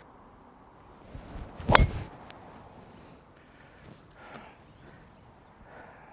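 A driver striking a golf ball off the tee: one sharp, loud crack a little under two seconds in. It is a mishit struck under the ball, skying it.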